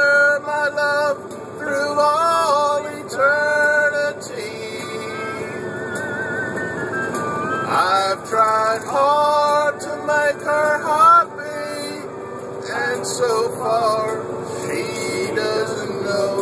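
A man singing an old country ballad unaccompanied in the cab of a moving truck, with some long held notes and the steady drone of the truck underneath.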